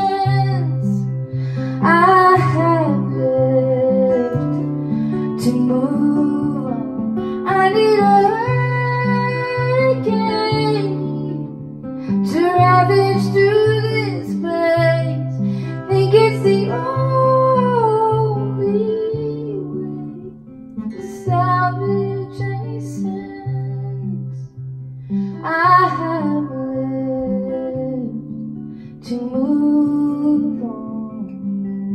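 A woman singing held, gliding phrases over her own acoustic guitar, which keeps up a steady repeating pattern of low notes; the voice drops out in short gaps between phrases while the guitar carries on.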